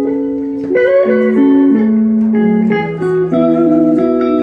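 Live band playing without a drumbeat: electric guitar plucking notes over held keyboard chords and bass, the notes shifting every half second or so, with a fresh run of plucked notes about a second in.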